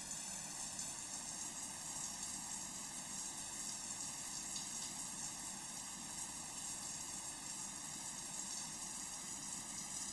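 Shower spray running steadily: a continuous even hiss of falling water.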